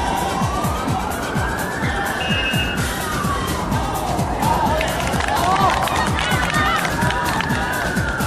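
A siren wailing in long, slow rises and falls, peaking about two seconds in and again near the end, over the shouts of voices around a football pitch.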